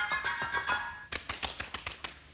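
Rapid tap-dance steps, shoes clicking in a quick run, over soft orchestral accompaniment; the taps come thickest in the second half as the music drops away.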